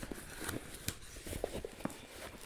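Cardboard box being handled and pulled open by hand: scattered light scrapes, taps and rustles of cardboard.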